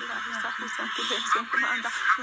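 A voice praying in tongues, a fast run of unintelligible syllables, sounding thin with no low end.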